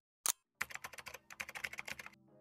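A single sharp click, then a quick, uneven run of light clicks, about ten a second.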